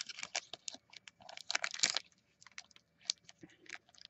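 Faint crinkling and small clicks of a foil trading-card booster pack wrapper and cards being handled, busiest in the first two seconds and then sparse.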